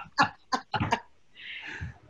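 A man laughing briefly in a few quick, cough-like bursts, then a soft breathy hiss near the end, heard through a video-call microphone.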